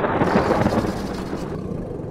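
A low, noisy rumble slowly dying away, the tail of an eruption-like boom laid under a volcanic lava scene.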